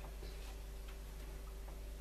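Quiet room tone: a low steady hum with a few faint, irregular ticks.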